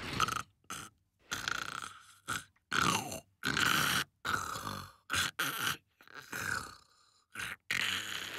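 A cartoon man snoring in his sleep: a run of short, noisy snores and breaths, one every second or so.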